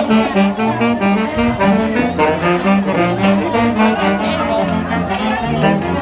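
Marching band saxophones playing a quick tune of many short notes together, with a sousaphone playing the low notes beneath.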